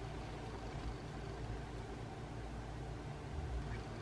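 Steady low hiss with a faint hum underneath: room tone, with no distinct events.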